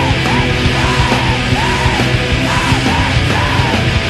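Screamo band recording: loud distorted guitars, bass and drums with shouted vocals, dense and steady throughout.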